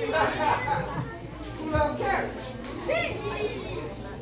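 A crowd of children's voices talking and calling out over one another.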